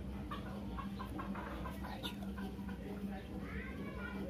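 Animal calls in the background: a run of short separate calls, then a rising call near the end, over a steady low hum.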